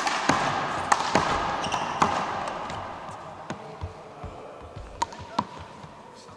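Small rubber handball being struck by hand and hitting the wall and hardwood floor: sharp slaps that echo in a gym hall, several in the first two seconds and then sparser ones. Under them is a wash of voices that fades over the first few seconds.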